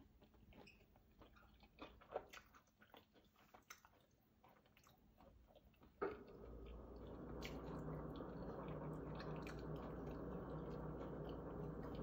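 Faint chewing with small mouth clicks as fried cauliflower is eaten, then from about six seconds in a steady low hum.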